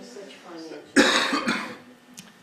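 A person coughing: a sudden loud cough about a second in, followed quickly by a second one.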